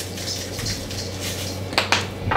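A bottle of tahini sauce being tipped and shaken over a stainless steel mixing bowl: faint handling sounds, with a couple of sharp clicks near the end.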